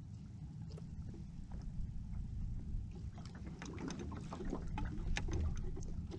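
Steady low rumble of wind and water against the hull of a small skiff at rest on the sea, with faint small clicks in the second half as hands thread squid bait onto a hook.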